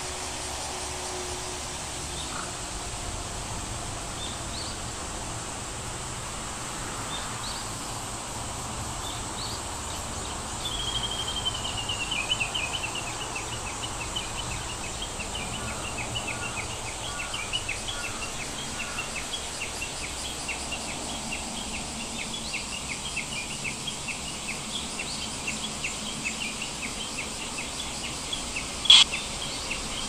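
Bird chirping over a steady background hiss: a quick falling trill about ten seconds in, then short chirps repeated at a brisk, even pace to the end. A single sharp click comes near the end.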